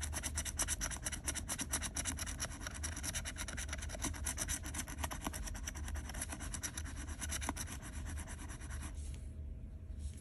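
A paper scratch-off lottery ticket having its latex coating scraped off with a round scratcher. The scratching is rapid and steady and stops about a second before the end.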